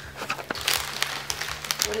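Plastic wrapper of a packet of hard candy crinkling and rustling as it is handled, a string of small irregular crackles.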